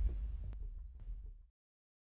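Deep, low rumble of an outro sound effect, fading, with two faint ticks about half a second and a second in; it cuts off suddenly about a second and a half in.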